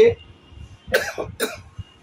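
A man coughing twice, two short coughs about half a second apart.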